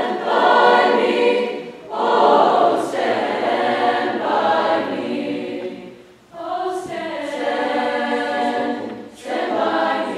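Mixed choir of many voices singing, in phrases with short breaks between them about two, six and nine seconds in.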